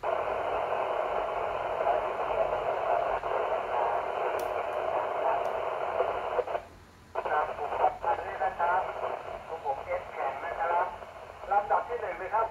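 Received audio from a 2 m FM transceiver's speaker, tuned to 144.8875 MHz. The squelch opens on a weak, hissy signal carrying a faint voice, drops out for about half a second near the middle, then reopens with a clearer voice. The sound is thin and band-limited, like a radio speaker.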